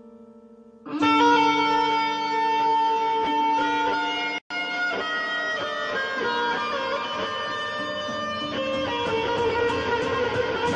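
Electric guitar coming in loudly about a second in after a soft wavering held chord, playing held lead notes that slide between pitches. The sound cuts out for an instant just before halfway.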